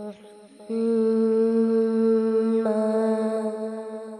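A steady, held hummed drone of backing voices, the kind laid under an unaccompanied naat, coming in about a second in and changing note about two-thirds of the way through before fading near the end.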